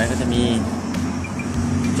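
A motor vehicle engine running steadily nearby, under a man's brief speech.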